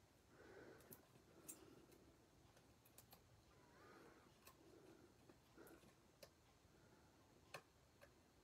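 Near silence: faint handling of cardstock and a foam adhesive dimensional as fingertips pick a layer off a paper card, with a few faint sharp clicks about every second and a half.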